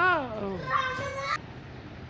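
A child's high voice calling out twice: first a shout that falls in pitch, then a higher held call that breaks off abruptly just over a second in.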